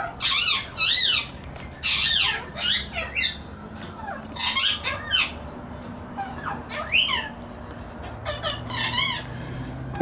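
Australian magpies giving a string of short, arched squawking calls, several in quick succession at first, then more spaced out.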